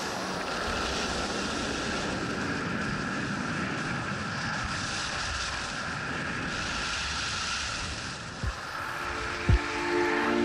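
Steady rush of wind on the microphone of a camera carried by a skier going downhill, mixed with the hiss of skis sliding on snow. Two short low thumps near the end.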